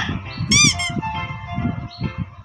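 Background music for a children's video, with a short, high cartoon squeak sound effect about half a second in whose pitch wavers up and down.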